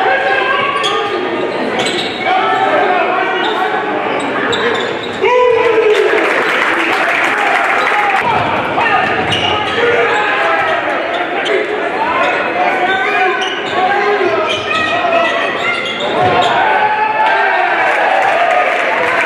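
Basketball being dribbled on a hardwood gym floor during a game, with spectators' voices and shouts echoing in the hall around it; the crowd grows louder about five seconds in.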